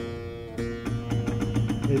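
Fretted clavichord, a 1978 Christopher Clarke copy, played one note at a time: a note struck at once and a second about half a second in, both ringing on.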